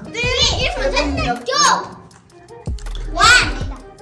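Children's high-pitched excited voices and exclamations over background music.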